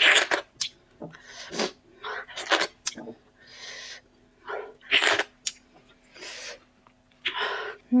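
Close-miked mouth sounds of licking and sucking food off fingers, with lip smacks and several sharp breaths and breathy hisses in between. A faint steady hum runs underneath.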